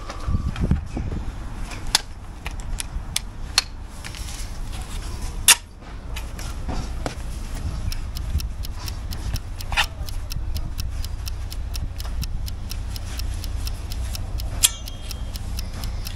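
Bricklaying hand tools (hammer and trowels) being handled: a run of sharp clicks and knocks, with a few louder strikes, over a steady low rumble.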